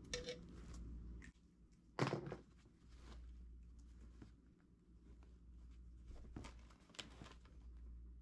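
Quiet handling of a canvas bag and small tools on a workbench: a short scratchy click at the start, a dull thump about two seconds in, then a few light clicks and rustles, over a low steady hum.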